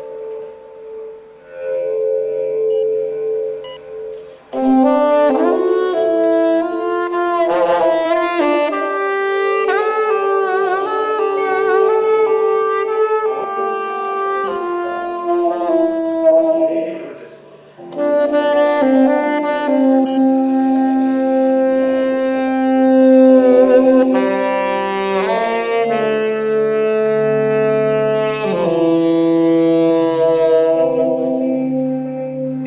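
Space-rock instrumental music: a saxophone plays a melodic line of held and sliding notes over a sustained low drone. The music starts softly, fills out about four seconds in, and drops away briefly just past halfway before coming back.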